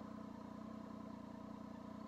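Triumph Tiger 800 XRT's three-cylinder engine idling steadily and faintly while the bike stands still.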